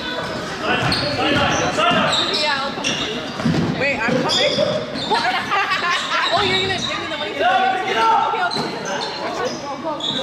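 Basketball game sounds in a gym: a ball being dribbled on the court floor and players' sneakers squeaking in short, sharp chirps, with voices echoing around the hall.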